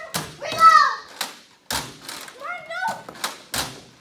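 Children's short excited shouts and squeals, with about five sharp thuds or knocks among them.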